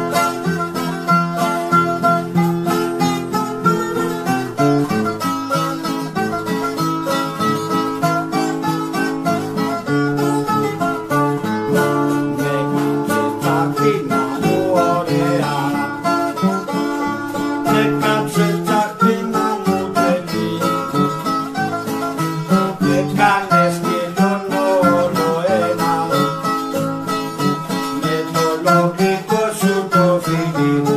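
A bouzouki playing a fast, ornamented melody over strummed acoustic guitar chords, in Greek popular style.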